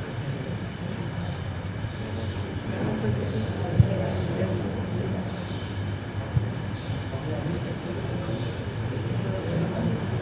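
Steady low hum of room noise with faint murmured voices and a couple of soft knocks.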